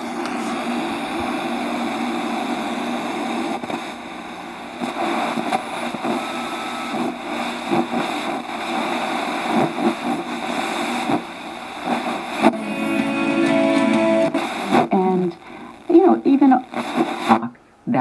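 Sony SRF-59 FM/AM Walkman radio being tuned up the FM band in DX mode: hiss between stations, with snatches of broadcast speech and music fading in and out as the dial passes stations.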